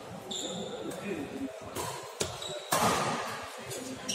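Badminton rackets striking the shuttlecock during a doubles rally: a sharp crack about a second and a half in, then two more in quick succession, the last and loudest ringing on in the hall. A short high shoe squeak on the court floor comes before them, over voices in the hall.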